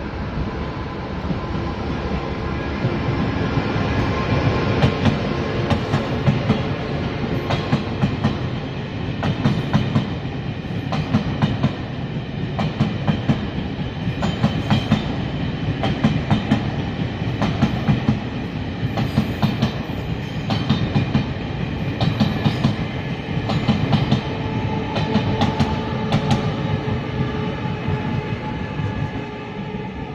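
Taiwan Railway E1000 push-pull Tze-Chiang express train passing: a steady rumble of the running train, with clusters of clickety-clack as the wheel sets cross rail joints and points, repeating every second or two as the coaches go by.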